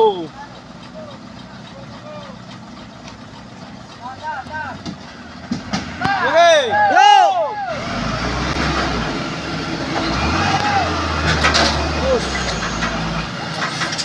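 Heavy diesel truck engines labouring under load as a tanker truck pulls a loaded palm-fruit truck stuck on a muddy slope by tow cable; the low engine note swells and holds strong from about halfway through. Men shout over the engines in the first half.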